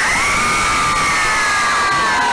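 Concert crowd cheering, with several voices close by holding a long high scream that slides down in pitch at the end.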